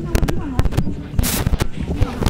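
Irregular sharp knocks and pops close to the microphone, about six in two seconds, with a short rushing burst about a second in, over faint nearby voices.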